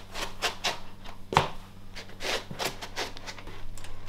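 Handling noise from a handheld camera carried by someone walking: irregular rubbing and light knocks, with one sharper knock about a second and a half in.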